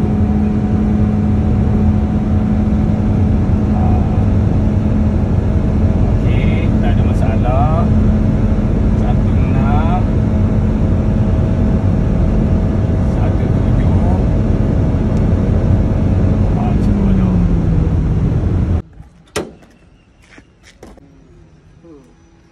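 Cabin noise of a Toyota being driven forward on a freshly fitted second-hand gearbox: steady engine and road noise with a steady hum that falls in pitch as the car slows near the end. The sound then cuts off suddenly to a much quieter background with a few clicks.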